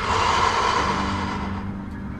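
Background music with steady low tones, and a sudden burst of noise at the start that fades away over about a second and a half.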